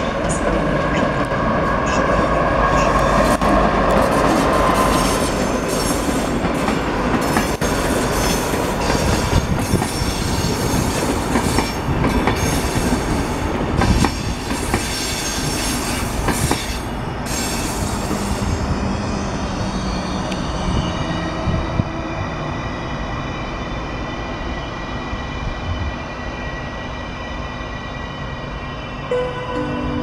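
A passenger train rolling slowly past: the rebuilt EU07A electric locomotive and its InterCity coaches. Wheels click repeatedly over rail joints and points, with high-pitched squealing from the wheels. The clatter thins out after about 18 seconds, leaving a quieter steady rumble as the coaches run into the station.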